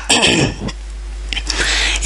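A man clearing his throat once, a short burst lasting under a second, followed by quiet room tone with a low hum.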